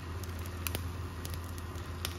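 Eggs frying in a pan: faint sizzling with scattered small crackles and pops, over a steady low hum.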